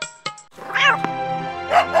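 A cat meows once, a single rising-then-falling call, about a second in, over background music that changes from plucked notes to a steadier tune about half a second in. A voice begins speaking near the end.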